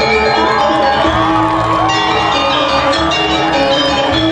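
Balinese gong kebyar gamelan playing loudly, with sustained ringing bronze metallophone and gong tones. Voices call out over the music in rising and falling whoops.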